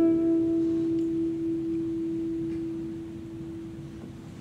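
A plucked note on a nylon-string classical guitar rings on and slowly dies away, with no new notes struck.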